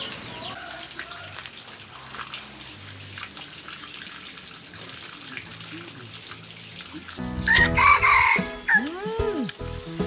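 Faint outdoor ambience with scattered small chirps for about seven seconds. Then background music comes in, and over it a rooster crows.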